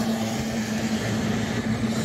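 Racing boats' outboard engines running on the course: a steady, unchanging low drone.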